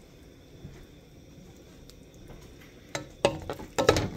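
A serving spoon knocking and scraping against the cooking pot a few times near the end, as stewed potatoes and meat are scooped. Before that, only faint stirring in the stew.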